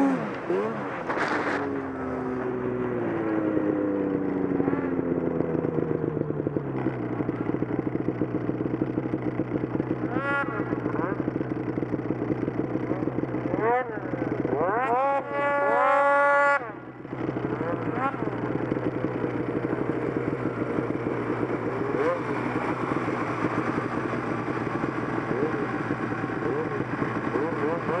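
Snowmobile engine winding down from a rev over the first several seconds and settling into a steady idle, with short rev blips about ten seconds in and again around fourteen to sixteen seconds in.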